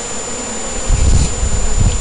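Honeybees buzzing in a faint steady hum. A low rumble on the microphone comes in about a second in.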